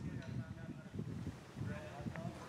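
Faint, distant human voices, heard briefly near the start and again near the end, over a low outdoor rumble.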